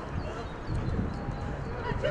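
Outdoor football pitch ambience: a steady low rumble with a few faint sharp knocks from play on the field, and distant shouts from players.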